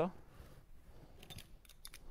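Low room tone with a few faint, sharp clicks in quick succession in the second half.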